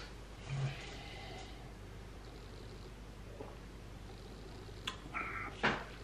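Quiet room tone, then near the end a couple of light knocks with a short rustle between them, as a stemless drinking glass is set down on a table.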